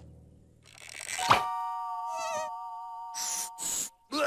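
Cartoon sound effects and score: a rising whoosh that ends in a sharp hit about a second in, then a held, ringing chord of several steady tones with a brief warble in the middle, and short hissy swishes near the end.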